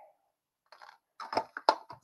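Light clicks and taps of craft supplies being moved on a desk and a plastic cutting plate being handled at a mini die-cutting machine: silent at first, then four or five quick clicks in the second half.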